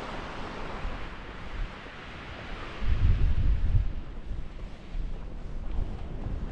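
Strong wind buffeting the microphone in uneven low rumbling gusts, heaviest about three seconds in, over a steady hiss.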